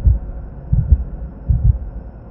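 Heartbeat sound effect in a TV channel's logo ident: deep double thumps, a pair about every three-quarters of a second.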